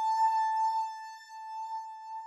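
Sonic Projects OP-X Pro II software synthesizer holding one note, a single pitch with a bright stack of overtones, slowly fading away.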